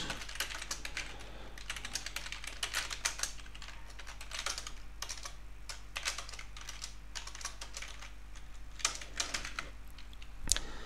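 Typing on a computer keyboard: irregular key clicks coming in quick runs with short pauses between them, as a line of C++ code is entered.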